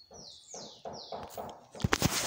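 A bird calling with a run of short, high notes that fall in pitch, about three a second, with a sharp knock near the end.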